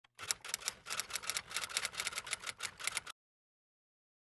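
Typewriter-style typing sound effect: a rapid run of key clicks, about six or seven a second, that stops suddenly.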